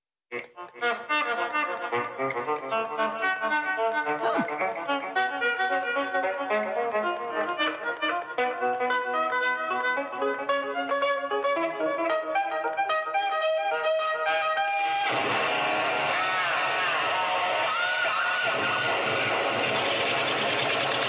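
Electric guitar, a replica Frankenstrat, playing notes swelled in with the volume knob through an echo effect, so they come out violin-like with repeating echoes. About 15 seconds in it changes to a denser, noisier passage with bending pitches.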